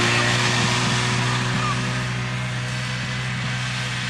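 Snowmobile engine running at a steady pitch, easing slightly in loudness.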